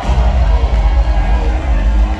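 Loud, bass-heavy hip-hop beat playing over a concert PA system, heard from within the crowd. The bass gets stronger right at the start.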